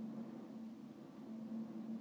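Faint room tone with a low, steady hum.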